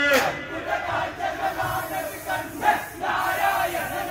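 A group of men's voices calling out together in chorus, without clear words, with a louder shout about two and a half seconds in.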